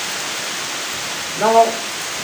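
A steady hiss under a pause in a man's speech through a microphone, with one short spoken word about one and a half seconds in.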